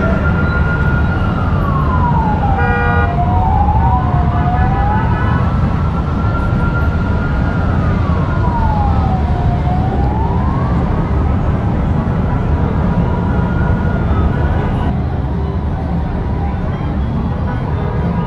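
A siren wails slowly up and down, with two sweeps crossing each other about three to five seconds in and a short horn note at about the same moment. Under it runs a steady low rumble of many motorcycle engines riding in procession. The siren stops about fifteen seconds in.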